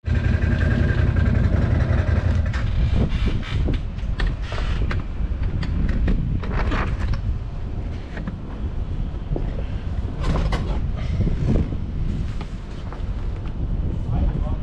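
Motorcycle engine idling with a steady low rumble, with a few scattered clicks and knocks.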